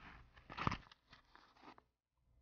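Faint handling noises as plastic items are moved: a short crunchy rustle with one sharp click about two-thirds of a second in, then a few small ticks.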